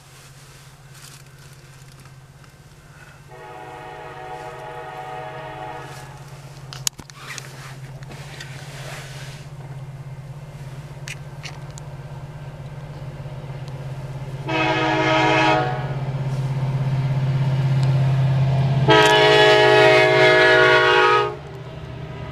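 Air horn of an approaching CN freight train led by two EMD SD70M-2 diesel locomotives, sounding three times: a long blast about three seconds in, a short one about two-thirds through, and a long one near the end. Under it a steady low drone from the locomotives grows louder as the train nears.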